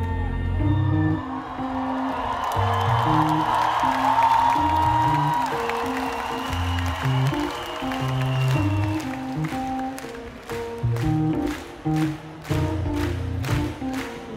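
Live electronic music playing through a festival PA, a sustained synth bass line changing notes, with the crowd cheering and applauding over it. About nine seconds in, a regular clicking beat comes in on top.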